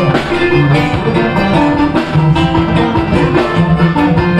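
Live band playing an upbeat dance song: drum kit and hand drums keep a steady beat under guitar.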